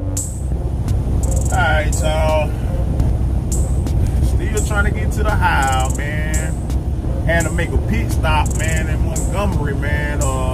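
Steady low drone of a semi truck's engine and tyres heard inside the cab at highway speed, with a voice heard over it in short stretches.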